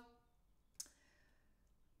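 Near silence: room tone in a pause between words, broken by one short click about a second in.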